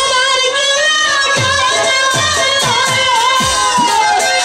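A woman sings a Bengali jatra song through a stage sound system, her line wavering with vibrato and sliding down near the end. A live band accompanies her, with hand-drum strokes that drop in pitch about twice a second.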